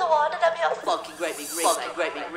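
A high-pitched, warbling voice-like sound, with a sharp hiss lasting about a second, starting a little under a second in.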